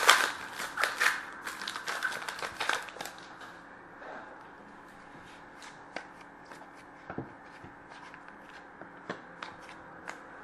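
Foil wrapper of a hockey card pack crinkling as it is torn open, loudest in the first three seconds. Then light clicks and slides of cards being handled and flipped through.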